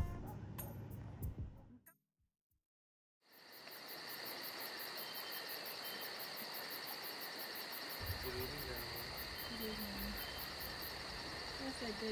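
Background music that cuts off about two seconds in, then steady high-pitched chirring of insects outdoors at dusk. From about eight seconds in, a low rumble and faint voices join it.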